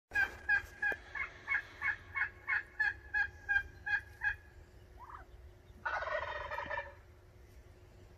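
Turkey calls: a run of about a dozen evenly spaced yelps, about three a second, then a short call and a gobble lasting about a second near the end.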